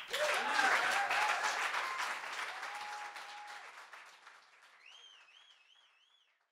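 Small seated audience applauding, with a few voices cheering; the clapping is loudest at first and dies away over about five seconds. Near the end comes a faint, repeated high warble.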